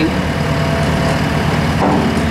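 Engine of a JCB Teleskid 3TS-8T compact track loader running steadily at low revs.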